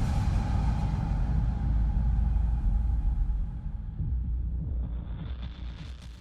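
Deep, rumbling low drone of a cinematic soundtrack, fading out over the last two seconds, with a rising hiss just before it ends.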